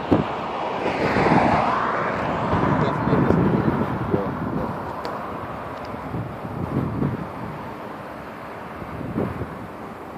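Highway traffic noise: tyre and engine sound swelling and fading as vehicles pass close by, the loudest pass about a second in, with wind buffeting the microphone.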